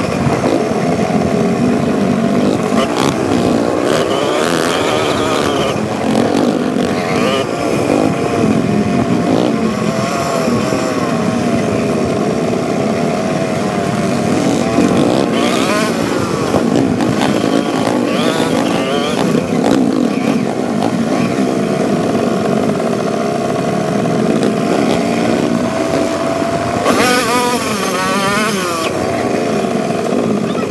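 Several off-road dirt bikes running along a trail, their engine notes rising and falling with the throttle. There is a brief louder rush of noise near the end.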